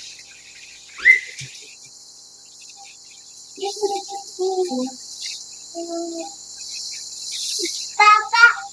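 A young child's short vocal sounds over a steady high-pitched hiss: a brief rising squeal about a second in, then a few short hummed notes near the middle.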